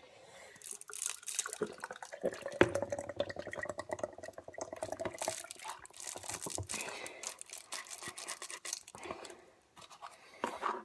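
Milk poured from a carton into a plastic sippy cup, a steady pour lasting about three seconds, with light plastic clicks and handling noise around it.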